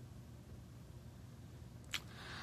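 Faint room tone through a phone microphone, a low steady hum and hiss, with one brief sharp sound near the end.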